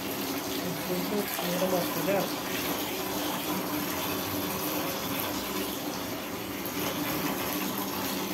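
Water from a shower hose pouring steadily into a plastic basin as it fills.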